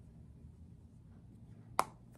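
Low room tone, then near the end a single sharp click from a plastic powder-highlighter compact's lid snapping.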